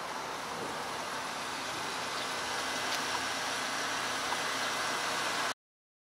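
Street ambience: a steady hiss of traffic, which cuts off abruptly about five and a half seconds in.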